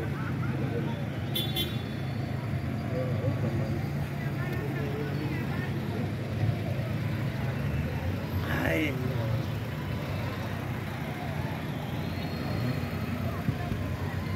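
Town street traffic heard from above: a steady low rumble of passing cars and motorbikes, with faint voices of people in the street.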